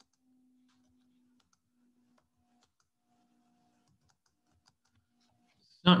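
Near silence with a faint low hum and a few very faint clicks of computer keyboard keys; a voice starts right at the end.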